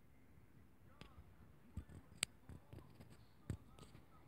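Near silence with a few faint, isolated clicks, the sharpest about halfway through.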